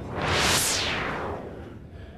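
A TV broadcast transition whoosh: a swell of rushing noise that peaks about half a second in and fades away over the next second and a half.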